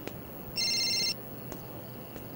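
A mobile phone gives one electronic beep lasting a little over half a second as a call is placed, with a few faint clicks around it.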